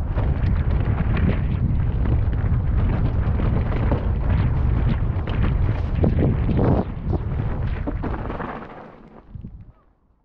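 Mountain bike riding a rough dirt trail, heard through a helmet-mounted camera: a heavy wind rumble on the microphone with the rattle and knocks of the bike over the ground. It fades out over the last second or so.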